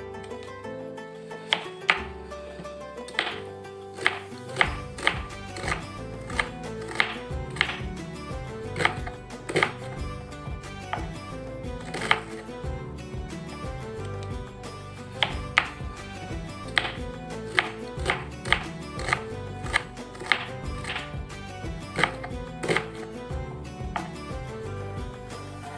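Knife chopping a red onion on a wooden cutting board: sharp, irregular taps about one to two a second, starting a second or two in. Background music with sustained notes plays under the taps.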